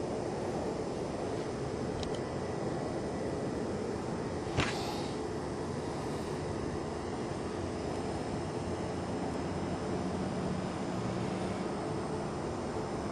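Steady background rumble and hiss, with one sharp click about four and a half seconds in.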